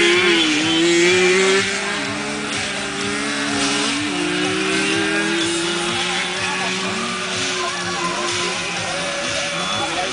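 Several small motorcycle engines running and revving on a grass track, their pitches drifting up and down as they overlap. They are loudest in the first second and a half, then settle a little lower.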